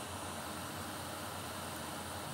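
Steady background hiss with a low hum underneath: room tone, with no distinct events.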